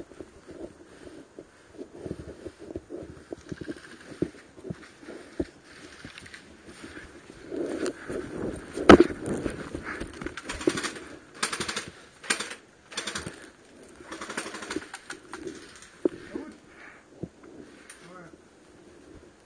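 Airsoft gunfire: scattered sharp clicks and knocks of shots and BB hits, busier in the middle stretch, with one loud crack about nine seconds in.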